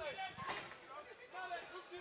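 Men's voices talking low and indistinctly, with the hall's ambience behind them.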